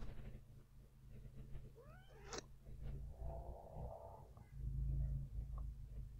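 A short animal call with arching, gliding pitch about two seconds in, over a steady low electrical hum.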